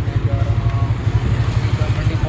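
Small rickshaw engine running with a rapid, low throb, heard from the passenger seat.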